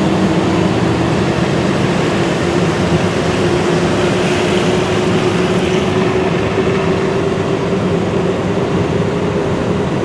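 Car driving noise heard from inside the cabin: engine and tyres on a snow-covered road, a steady rumble with a thin tone that slowly rises in pitch.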